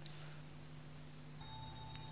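Faint background music: a low steady drone with thin held tones, a new higher held note coming in about a second and a half in. A tiny click at the start.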